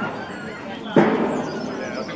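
A single sudden thump about a second in that fades out over the next second, with faint voices around it.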